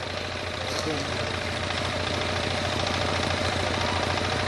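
Steady low electrical hum with an even background hiss from the loudspeaker system, with no voice.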